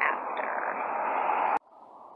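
Steady rushing noise of passing road traffic that builds slightly, then cuts off abruptly with a click about one and a half seconds in, leaving a quieter outdoor background.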